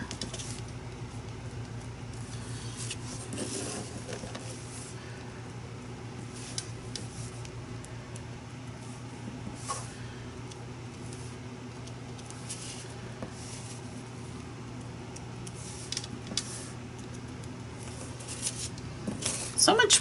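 Faint, scattered taps of a paint marker's tip dotting onto a paper tag and pressed against the palette to draw out paint, over a steady low hum.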